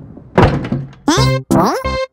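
Cartoon bowling ball running into the left gutter past the standing pins and landing with one hard thunk about half a second in. Comic music with rising, sliding notes follows from about a second in.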